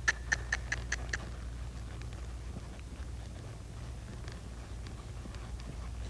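A quick run of about seven sharp, light clicks, roughly five a second, in the first second or so. After that there is only a low, steady hum.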